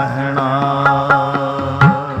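Classical Sikh shabad kirtan: a long, gently wavering sung note held over a harmonium, with a few sharp tabla strokes.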